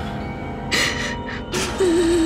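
A woman crying, with gasping sobbing breaths twice and then a drawn-out wavering cry near the end, over a steady background music score.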